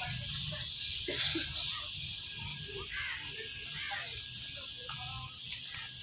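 Indistinct background voices over a steady high hiss and a low hum.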